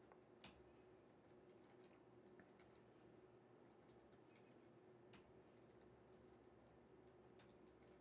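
Faint computer keyboard typing: scattered, irregular key clicks over near-silent room tone with a faint steady hum.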